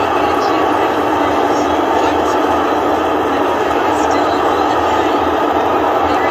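Starship Super Heavy booster's Raptor engines at liftoff: a loud, steady, unbroken roar.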